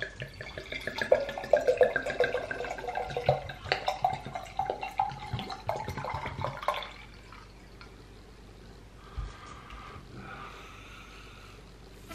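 Premixed espresso martini pouring from its bottle into a stemmed glass, a steady stream whose pitch rises as the glass fills, stopping about seven seconds in. A soft low thump follows a couple of seconds later.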